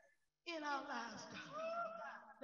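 A raised voice speaking with wide, sweeping rises and falls in pitch, starting after a half-second pause.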